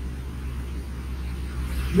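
A steady low hum with a faint hiss underneath: the background noise of a poor-quality room recording.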